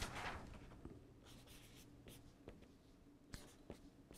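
Faint felt-tip marker strokes on a large paper pad, a few short scratches and ticks near the end as writing begins, after a soft paper rustle dying away at the start.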